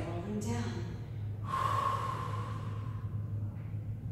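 A woman's long audible exhale, about a second and a half, as she bends forward into a standing fold, over a steady low hum. A few spoken sounds come just before it.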